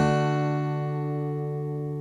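A strummed open D major chord on an acoustic guitar ringing out and slowly fading after the last strum, with no new strokes.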